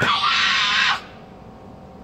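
A karate kiai: one loud shout from a young female karateka during the kata Kanku Dai, starting sharply and cut off after about a second.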